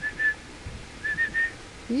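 A person whistling short, steady-pitched notes to get a dog's attention: two quick notes at the start, then three more about a second in.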